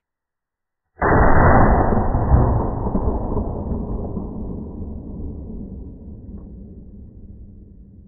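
A single deep, muffled boom starting about a second in, then fading slowly over about seven seconds.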